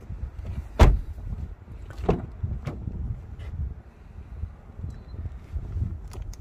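A Suzuki Vitara's door shut with one loud thump about a second in, then a lighter knock about two seconds in and a few faint clicks, over a low rumble.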